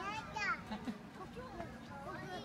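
Background voices of children and people chattering, with a brief high-pitched child's shout about half a second in.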